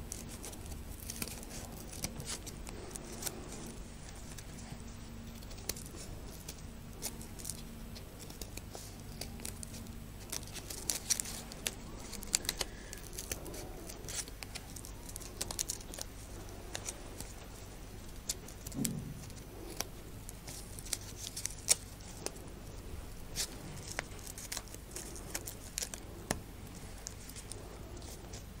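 Small child-safe scissors snipping through accordion-folded paper in quiet, irregular cuts, with paper rustling between them.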